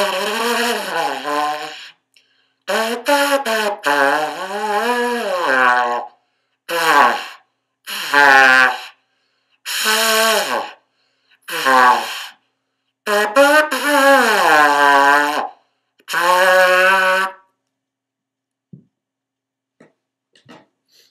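Valveless ceramic trumpet, wheel-thrown clay with a glass-lined bore, played in a string of short phrases of buzzy held notes whose pitch slides up and down, stopping about 17 seconds in.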